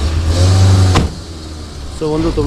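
Safari jeep's engine pulling away and speeding up, its pitch rising, with a sharp knock about a second in, after which it runs more quietly.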